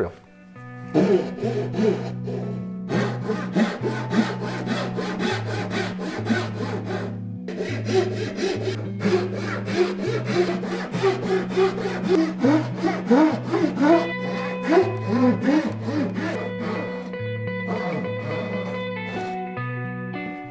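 Hand sawing into a wooden boat keel with a fine-toothed backsaw, repeated strokes cutting V-shaped notches at each frame station, under background guitar music with a steady bass line.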